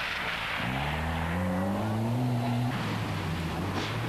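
Ford Sierra rally car accelerating hard on a loose gravel stage. A hiss of tyres on gravel comes first, then the engine note climbs steadily for about two seconds and drops sharply near the three-second mark.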